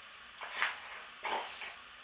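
A dog giving three short vocal sounds, the first about half a second in and the other two close together past the middle.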